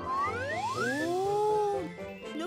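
Cartoon musical sound effect: several stacked swooping tones glide upward together, level off and drop away near the end. It scores the volleyball being served high into the sky.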